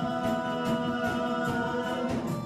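Live rock band playing: electric guitars sustaining notes over a drum kit keeping a steady beat, about three hits a second.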